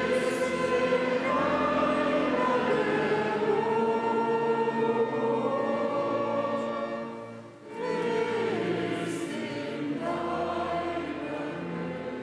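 A choir singing a slow piece in long held notes, in two phrases with a short breath between them about seven and a half seconds in.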